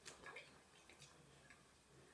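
Near silence, with a few faint ticks as hands rub facial oil over the skin of the face.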